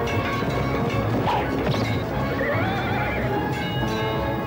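A horse gives a long, wavering neigh about halfway through, over the film's dramatic background music.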